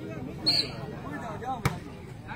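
A volleyball struck hard by a player's hand: one sharp slap about one and a half seconds in, over faint crowd voices.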